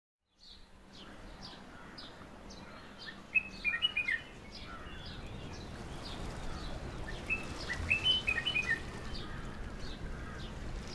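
Birds chirping over a steady background noise: one bird repeats a short falling call about twice a second, and clusters of louder, sharper chirps come about three seconds in and again near eight seconds.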